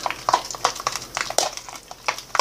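A spoon stirring and mashing a wet fruit mash of banana and applesauce in a small plastic tub, giving irregular clicks and scrapes several times a second: the mixing of a fruit fly culture medium.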